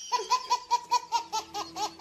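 Baby laughing in a quick, rhythmic run of high-pitched laughs, about five a second.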